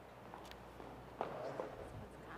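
A few faint footsteps on a hard floor, soft separate steps over a low room hiss.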